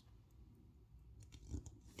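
Near silence, with a few faint crackles of a vinyl planner sticker being pressed down and lifted on a paper page by fingertips, the loudest about one and a half seconds in.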